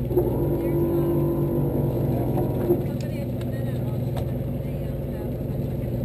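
Fishing boat's engine running with a steady low drone, heard from on deck. A steady held tone sounds over it for about two and a half seconds near the start.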